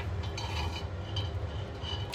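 A metal ladle knocking and scraping lightly against a cooking pot as korma is spooned into a serving pot, a few faint clinks over a steady low hum.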